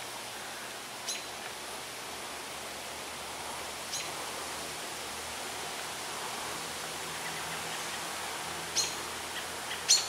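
Steady outdoor background hiss, with a few brief, sharp high chirps or clicks: one about a second in, one about four seconds in, and two close together near the end.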